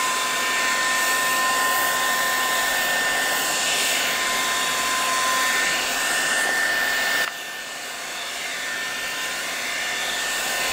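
Handheld craft heat tool blowing hot air over wet alcohol ink on acetate to push the ink and dry it: a steady fan rush with a high, steady whine. About seven seconds in it turns noticeably quieter, then slowly builds again.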